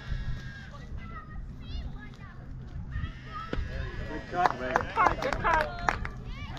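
Voices of spectators and players at a ball field: faint chatter at first, then a burst of loud, high-pitched shouting and calling from about four seconds in.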